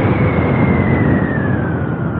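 Yamaha Y16ZR's 155 cc single-cylinder VVA engine heard while riding, its note falling slowly and steadily over the two seconds, under a rush of wind noise on the microphone.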